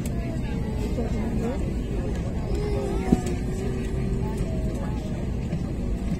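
Steady low hum inside an airliner cabin, with faint passenger chatter in the background and one short click about three seconds in.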